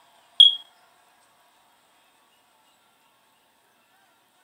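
A single short, loud, high-pitched electronic beep about half a second in, followed by only a faint background hum.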